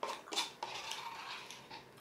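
Plastic spoon scraping and clicking against the inside of a paper açaí bowl cup while scooping, a few light clicks in the first half and faint scraping after.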